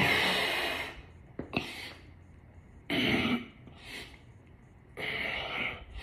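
A man's forceful breathing during push-ups: short, sharp huffing breaths about every second or two, the loudest one at the start.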